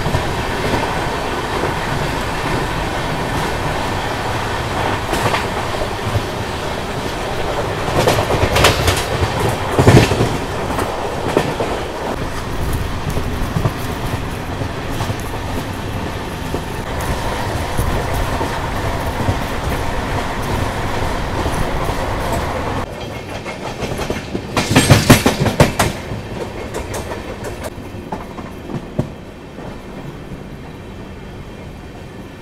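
Express passenger train running at speed, heard from the open door of a coach: a steady rumble of wheels on rails, with bursts of rapid clickety-clack about eight to eleven seconds in and again about twenty-five seconds in. It grows quieter near the end.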